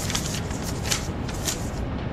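Loose sheets of paper rustling and flapping as they fall and scatter onto the pavement: a quick, irregular run of crisp swishes that stops near the end.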